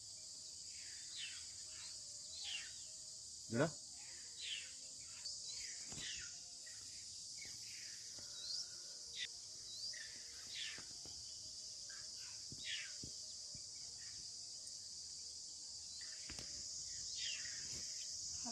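Outdoor hillside scrub ambience: a steady high insect drone with many short, falling bird chirps scattered through it, and one sharp rising whistle about three and a half seconds in that is the loudest sound.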